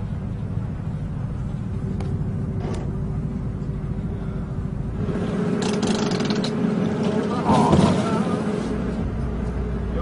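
Minibus engine running, a steady low rumble heard from inside the cabin, with indistinct voices; about halfway through the sound grows busier, with a short, louder sound near eight seconds.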